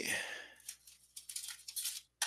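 A quick run of short scrapes, rattles and clicks of drawing tools being rummaged through and picked up on a desk while a plastic French curve is fetched, following the end of a spoken word.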